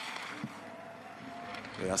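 Faint, steady hiss of giant slalom skis carving and scraping over hard-packed snow, picked up by the course microphones, with a faint steady tone in the middle.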